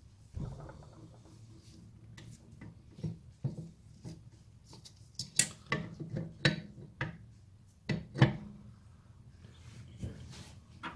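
Brake shoes and return springs being worked onto a Classic Mini rear drum-brake backplate by hand: a run of irregular metallic clicks, clinks and knocks, the loudest about five and eight seconds in.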